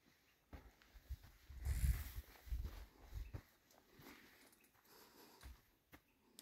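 Footsteps and camera handling: soft, irregular thumps through the first half, with a brief rustle about two seconds in, then only faint scattered bumps.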